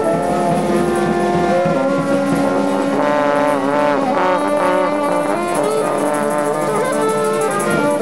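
Street brass band playing, with trombone prominent among the horns: long held chords at first, then from about three seconds in, wavering notes that bend in pitch.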